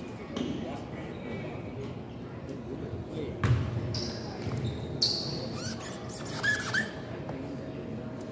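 Indistinct chatter echoing through a gymnasium, with two sharp bounces of a basketball on the hardwood floor about a second and a half apart, and brief sneaker squeaks near the end.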